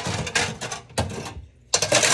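Quick clinks and rattles of metal kitchenware as the parts of a new pressure cooker are handled for washing, a brief lull, then a sharper knock near the end.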